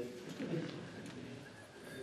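Faint, indistinct voices in a large hall, with no clear words.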